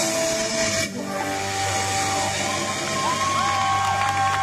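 A live rock band ending a song: a cymbal crash rings out in the first second while the last chord and amplifier hum hold underneath. Several held high tones come in during the second half as the song gives way to the crowd.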